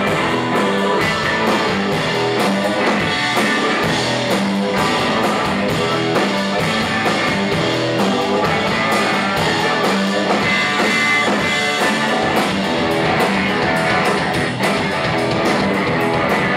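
A rock band playing live: electric guitars over a drum kit keeping a steady beat, in a psychedelic blues-rock style.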